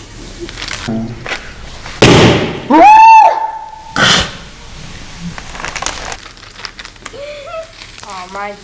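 Slow-motion replay of a Ziploc bag of vinegar and baking soda going off: a sudden burst of noise about two seconds in, then a high squeal that rises and holds, both slowed to an octave deeper and drawn out, with another short burst a second later.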